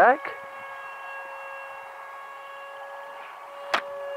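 Electric ducted fan of a Hobbyking Sonic 64 RC jet whining steadily in flight, a single held tone with overtones. A sharp click near the end.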